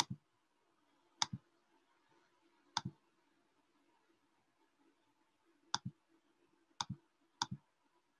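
Faint computer mouse clicks: six clicks at uneven intervals, each heard as a quick press-and-release double tick.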